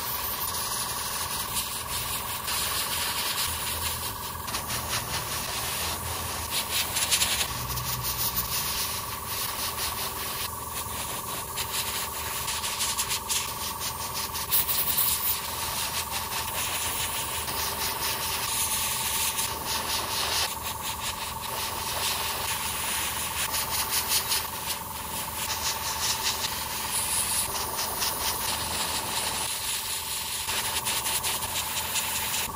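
Gravity-feed airbrush spraying a first base coat of paint onto small plastic model parts: a steady hiss of air and paint that swells and eases in short pulses, over a steady hum.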